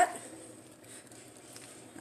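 Faint rustling of fresh spinach leaves being handled by hand.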